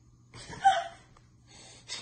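A short, sharp breathy gasp with a brief squeak in it about half a second in, followed by a softer breath near the end.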